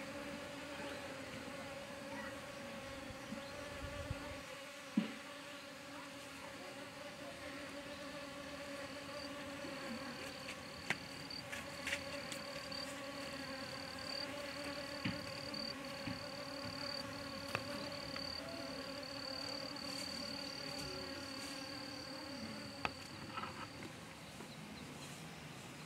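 Insects buzzing in flowering vegetation: a faint, steady low buzz. About nine seconds in, a high, thin, continuous insect trill joins it, with a few light clicks.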